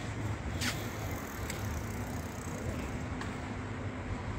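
Street traffic noise: a steady low rumble of passing vehicles, with a few faint clicks and a brief hiss just under a second in.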